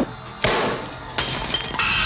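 A sudden hit about half a second in that dies away, then a loud, bright shattering crash from a little past one second, with ringing that carries on.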